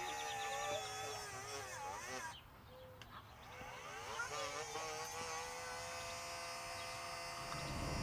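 Navac NEF6LM battery-powered flaring tool's electric motor running a flare cycle on 3/8-inch copper tube, a whine whose pitch wavers and bends. It stops for about a second a little over two seconds in, then runs on at a steadier pitch.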